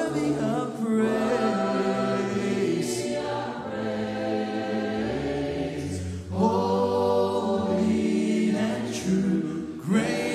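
A congregation singing a worship song a cappella in harmony, with no instruments, led by a song leader's amplified voice. Phrases break briefly a little after six seconds and again near the end.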